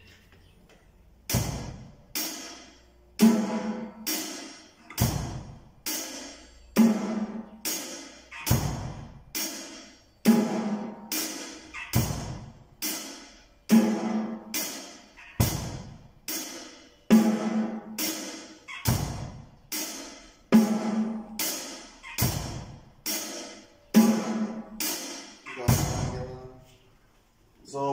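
A beginner plays a slow, steady basic beat on a drum kit: a cymbal struck on every beat, about one a second, a bass drum hit on the first beat of each bar, and snare strokes between. The same four-beat pattern repeats evenly, about every three and a half seconds.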